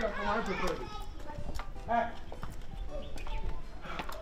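Footsteps of a few people walking on hard ground, heard as scattered light clicks, with short bits of talk at the start and about two seconds in.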